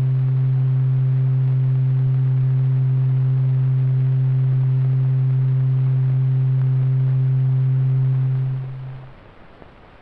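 A steady, low, pure-sounding tone with two faint overtones, held at one pitch and then fading out about a second before the end.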